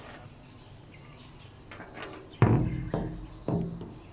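Phone and monopod handled and set down on a concrete ledge: three dull, bassy thumps, the first and loudest about two and a half seconds in, the others about half a second apart, after a quiet stretch.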